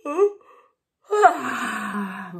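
A woman vocalizing without words: a short pitched sound at the start, then about a second in a long breathy sound that slides down in pitch and levels off low.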